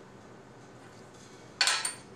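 One sharp metallic clank about one and a half seconds in, with a short high ring, from the wood lathe's metal fittings as a square blank is mounted between the chuck and the tailstock. Faint room noise around it.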